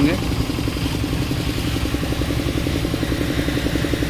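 Concrete vibrators running steadily: external plate vibrators clamped to the steel girder formwork and a needle vibrator, giving a continuous mechanical hum with a fast rattle. They are compacting freshly poured concrete so that it settles without honeycombing.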